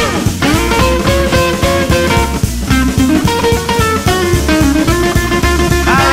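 A swing band plays an instrumental break. Drum kit and upright bass keep a steady beat under a lead line of held notes that slide up and down.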